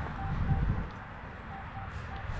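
Minelab Equinox metal detector coil swept over a freshly dug plug of soil and grass. The coil brushes the dirt with a rustling scrape, loudest in the first second, while the detector gives faint, short, evenly repeated beeps at one pitch, signalling a target in the plug.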